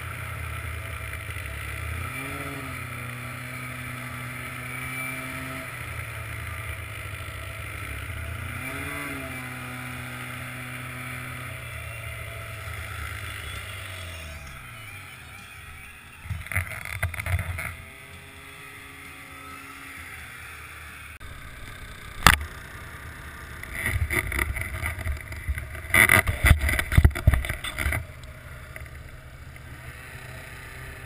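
Arctic Cat snowmobile engine running at low speed, with two short revs, then winding down about twelve seconds in. In the second half, loud irregular rustling and knocking bursts and one sharp knock take over.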